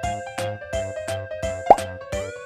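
Cheerful background music with a steady beat, and a short rising cartoon-style pop sound effect near the end, the loudest sound, marking the plastic surprise egg being opened.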